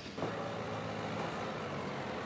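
A car engine running steadily with a low hum, under general street noise.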